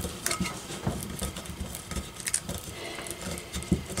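Hands handling a tumbler and pressing clear transfer paper onto it: irregular light taps, rustling and rubbing of paper against the cup.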